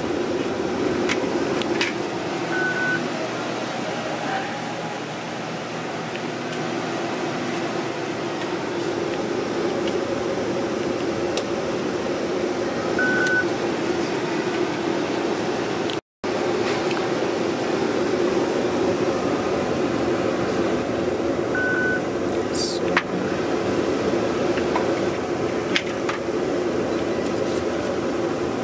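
Steady hum of a ventilation fan on a pathology grossing bench, with three short, identical high beeps about ten seconds apart and a few light clicks.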